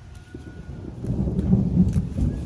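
A low, noisy rumble that swells about a second in and stays loud.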